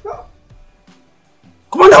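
A man's voice breaks in with a loud shout of 'Commander!' near the end, over faint background music, after a short sound at the very start.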